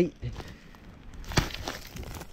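Dry twigs, needles and brush rustling and crackling as someone moves through them and reaches into a pile of dead sticks, with one sharp snap about a second and a half in.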